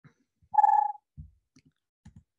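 A single short steady beep-like tone, about half a second long, followed by a faint low thump.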